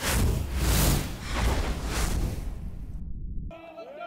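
Whooshing, rumbling transition sound effect that starts at once, swells in waves and fades, then cuts off abruptly about three and a half seconds in. Faint ballpark ambience follows.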